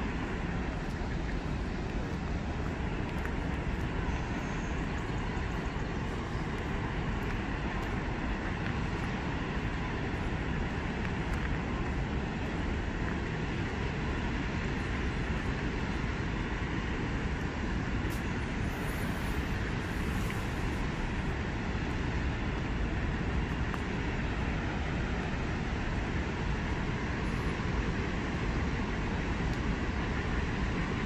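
Steady rushing roar of water pouring through the spillway dam gates and churning down the channel, even and unbroken throughout.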